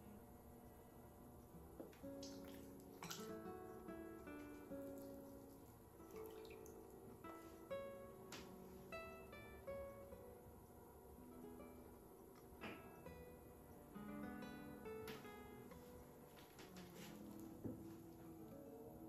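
Quiet background music of plucked acoustic guitar notes.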